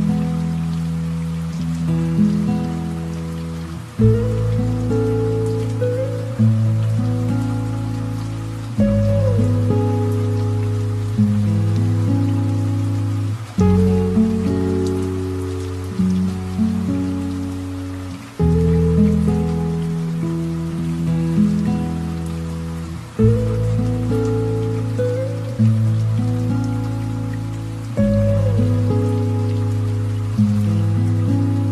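Slow, gentle piano music, its chords changing about every five seconds and fading between them, over a soft steady patter of light rain.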